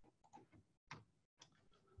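Near silence, broken by a few faint, short ticks spaced irregularly.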